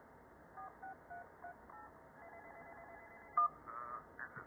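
Cartoon telephone sound effects played through a computer speaker: about five short keypad beeps, then a warbling ring for about a second. A sharp click follows, the loudest sound, and another short trill comes near the end.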